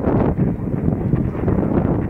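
Noisy medium-wave AM reception from a Sangean ATS-909 portable radio's speaker: hiss and static with no clear speech, mixed with wind buffeting the microphone.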